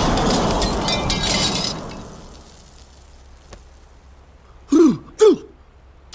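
Cartoon blast sound effect: a loud rumble with crackling debris that dies away over the first two seconds. Near the end, two short vocal sounds, each falling in pitch, half a second apart.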